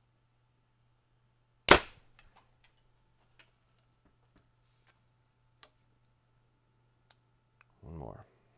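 Bowtech Carbon Zion compound bow, with no string silencers fitted, firing an arrow: one loud, sharp crack a little under two seconds in, dying away quickly in a short ring. Faint clicks follow as the bow is handled.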